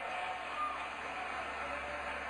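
Audience applauding in a recording played over loudspeakers into a large room, a steady even patter.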